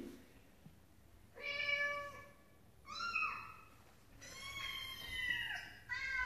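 A cat meowing three times: a short call about a second and a half in, another about three seconds in that bends down in pitch, and a longer drawn-out one near the end that falls away.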